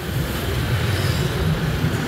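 Steady road and traffic noise from travelling along a busy city street, a continuous low rumble with no distinct events.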